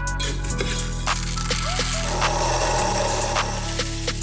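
Background music with held low notes and light clicks. About halfway through, a grainy, rattling rush lasting about a second and a half: ground coffee being handled and poured from a metal cup.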